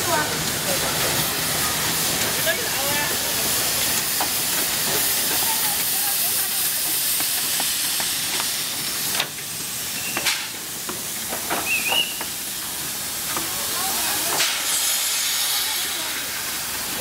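Jiayang Railway C2-class narrow-gauge steam locomotive passing close by, blowing off steam in a loud, steady hiss, with a few sharp knocks as it goes past.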